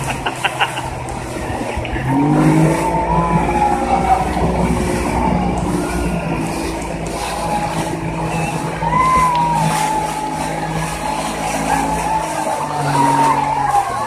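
Motorboat engine running at speed over rushing wind and water, a steady low note that settles in about two seconds in and drops away near the end.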